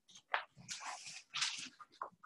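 Dry-erase marker scratching and squeaking on a whiteboard in short, irregular strokes, faint against the room.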